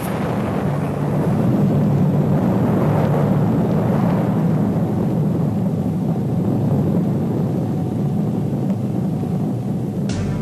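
Rocket blast-off sound effect: a loud, steady, rocket-engine rumble that builds within the first second or two, then holds and eases slightly toward the end.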